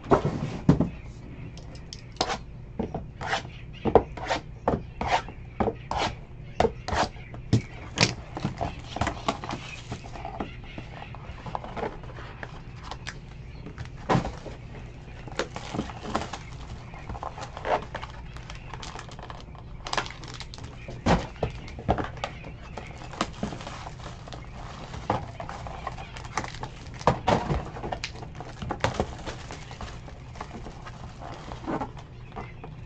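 Cardboard trading-card boxes being handled and opened on a desk: a series of sharp taps and knocks, thickest in the first ten seconds and scattered after, over a steady low hum.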